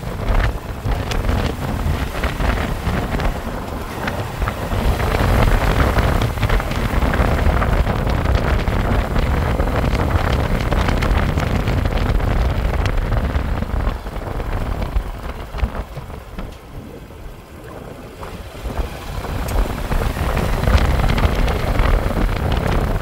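Motorcycle being ridden along a road, its engine running under wind noise buffeting the microphone. The noise drops for a few seconds past the middle, then rises again near the end.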